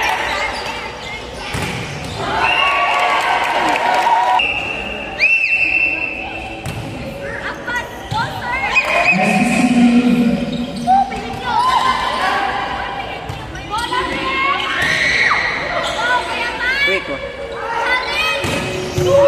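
Indoor volleyball rally: the ball is struck and bounces with sharp slaps and thuds, sneakers squeak in short chirps on the court, and players and spectators shout, all echoing in a large gym.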